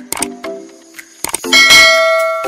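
Animated channel-logo sound effects: a quick run of short chime-like notes and clicks, then a loud ringing bell-like hit about one and a half seconds in that rings on.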